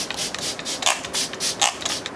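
Pump spray bottle of Smashbox Primer Water misting onto the face in rapid repeated sprays, about five short hissing bursts a second.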